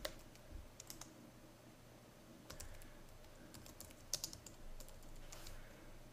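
Faint, scattered keystrokes on a computer keyboard, a few isolated clicks with pauses between them.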